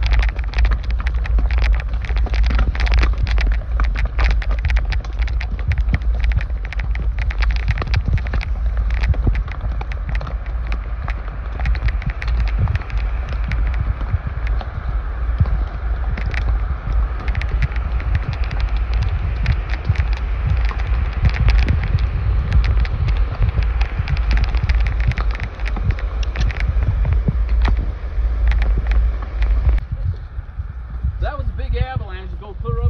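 Wind buffeting the phone microphone with a constant low rumble, over irregular clicks and crackles of horse hooves on a rocky trail and brush. The rushing of a creek rises in the middle.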